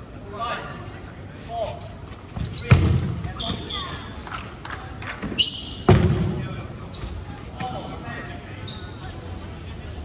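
Dodgeball game play: two sharp smacks of thrown balls striking, about three seconds apart, the second the loudest, amid players' voices on the court.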